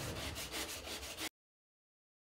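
Metal hand scraper scraping a wooden surface in quick, repeated strokes that cut off suddenly just over a second in.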